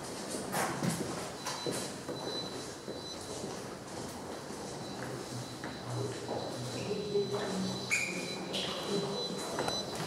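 Indistinct voices of people talking at a distance in a large room, in scattered fragments, with a faint steady high-pitched whine starting about a second and a half in.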